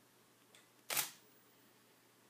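Canon DSLR shutter firing once about a second in: a short, sharp click.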